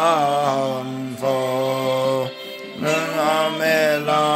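A man singing a few long held notes over a backing track, with a short break about two and a half seconds in.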